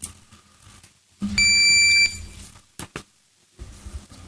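A single steady electronic beep, a high tone lasting well under a second, from the council's electronic voting system signalling the opening of a vote. Two short clicks follow about a second later.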